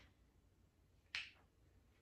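A single sharp click from a tripod head being handled and adjusted, about a second in; otherwise near silence.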